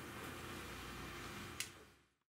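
Faint steady room hum with one light metallic click about one and a half seconds in, as a meat-grinder plate is handled.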